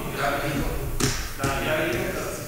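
Low, untranscribed talk among people at a meeting table, with two short, sharp clicks about a second in, a little under half a second apart.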